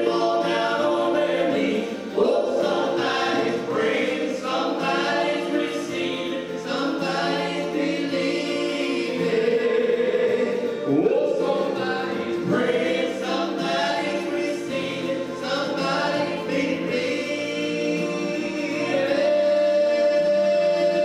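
Gospel trio of a woman and two men singing a song in three-part harmony into microphones through a PA, ending on a long held note near the end.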